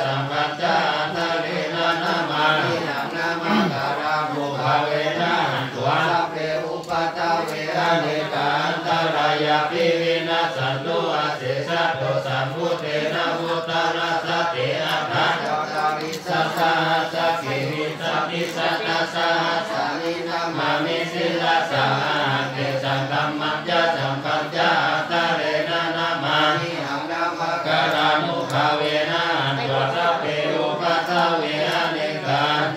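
Group of Buddhist monks chanting Pali verses together on a steady low pitch, continuous with only brief pauses, led by a monk into a microphone.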